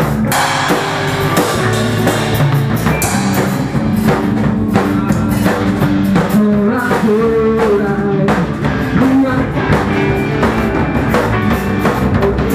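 A rock band playing live: a drum kit keeping a steady beat with cymbals, under electric guitar and a singing voice.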